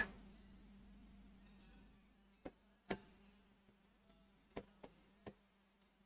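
Faint, scattered taps of chalk against a blackboard while writing, about five in all, over a faint steady hum.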